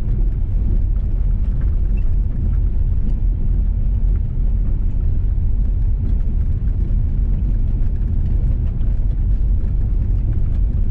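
Vehicle driving on a gravel road, heard from inside the cab: a steady low rumble of engine and tyres, with faint scattered ticks.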